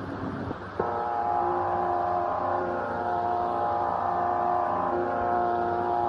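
A steady musical drone of several held pitches starts about a second in and holds evenly, with a small click as it begins.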